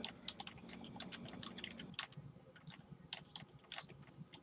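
Faint, irregular clicking of keys on a computer keyboard as a message is typed.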